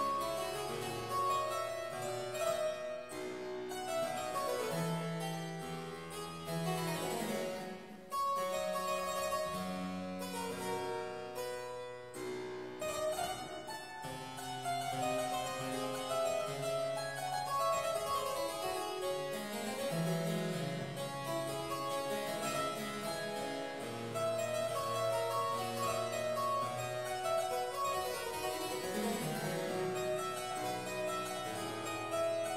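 Solo harpsichord, a Walter Chiriaglia instrument, played continuously: many plucked notes layered in several voices, with a short lull about eight seconds in before the playing resumes.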